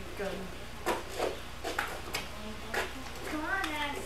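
Faint children's voices talking, with a few sharp clicks or knocks scattered through, over a steady low hum.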